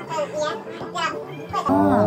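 High-pitched voices over background music, louder near the end.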